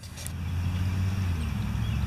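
Low wind rumble buffeting the camera's microphone, swelling over the first half second and then holding steady.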